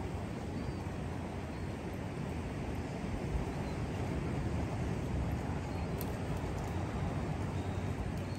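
Steady wind rumble on the microphone with surf washing against a rocky shoreline.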